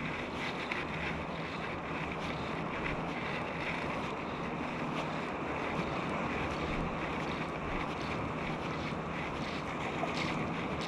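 Steady noise of small waves lapping in shallow water, mixed with light wind on the microphone.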